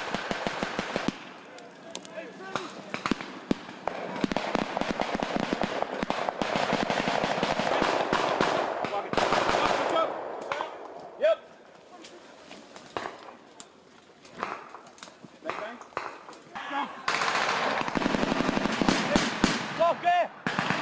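Rapid runs of automatic gunfire, crack after crack, thickest in the first half and again near the end, with scattered single shots in the quieter stretch between.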